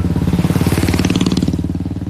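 A motor vehicle's engine passing close by, the sound swelling through the middle and easing off near the end.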